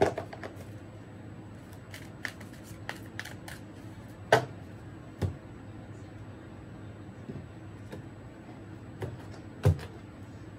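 Tarot cards being shuffled and dealt onto a tabletop: a run of light card clicks in the first few seconds, then a few sharper slaps as cards are set down, about four, five and nine and a half seconds in.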